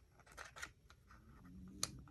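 Fingers picking at and peeling a paper cutout stuck on a glue-book page: faint paper rustles and small ticks, with one sharp click near the end.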